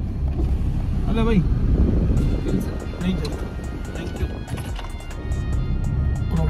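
A car running, heard from inside the cabin as a steady low rumble, with music playing over it and a few short vocal sounds.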